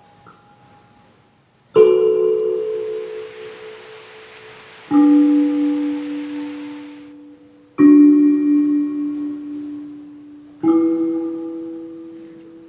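Four strikes on a ringing, pitched percussion instrument, about three seconds apart. Each note starts suddenly and fades slowly, and the pitches differ from strike to strike. A soft hiss sits under the first two notes.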